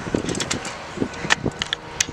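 Stunt scooter wheels rolling on concrete, with several sharp clicks and knocks from the scooter as the rider rolls out of a landed tailwhip and comes to a stop.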